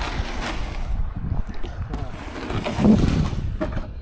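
Wind rumbling on the microphone, with a few knocks and scrapes from a canoe being pushed off a muddy bank and boarded, mostly toward the end.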